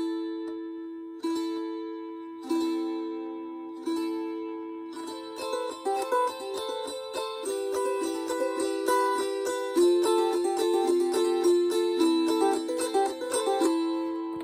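Wing-shaped gusli (Baltic psaltery) being played: four strummed chords, each left to ring out for over a second. From about five seconds in comes a quicker passage of strums with single plucked notes between them.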